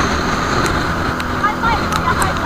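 Outrigger boat's engine running under steady wind noise and the rush of rough, choppy sea.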